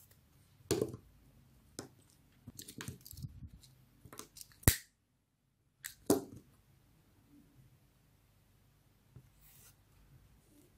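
Scissors snipping through satin ribbon: several separate short, sharp snips and clicks with handling rustle between them, the sharpest just before halfway and another about six seconds in.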